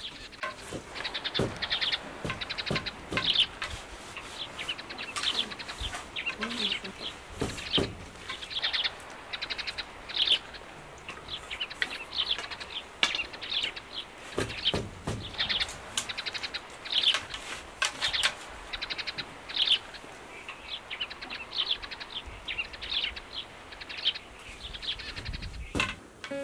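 Small birds chirping over and over in short high calls. A few sharp wooden knocks come from a backstrap loom being worked.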